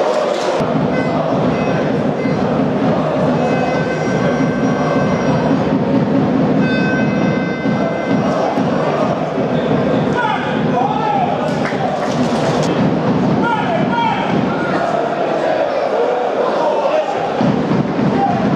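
Football stadium crowd: many voices shouting and chanting at a steady level, with some thuds.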